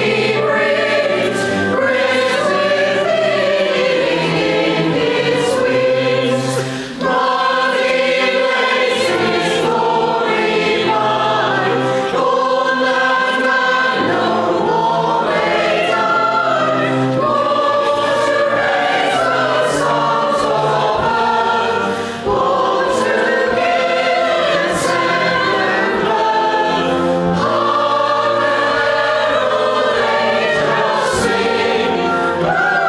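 Church congregation and choir singing a Christmas carol together, holding long sung lines with two brief breaks between phrases, about seven seconds in and again about twenty-two seconds in.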